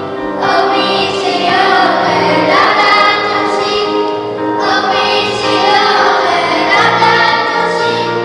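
Choir singing with accompaniment: long held notes in phrases of a couple of seconds each.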